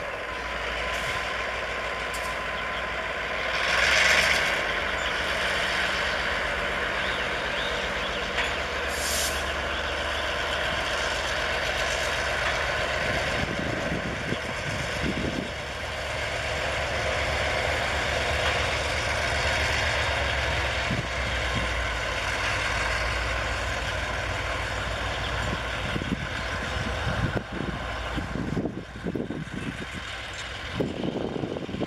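Diesel-electric freight locomotive R157 running slowly while hauling loaded flatcars during shunting: a steady engine drone with rolling wheel and rail noise. A loud hiss of air about four seconds in, and a short, higher hiss near nine seconds.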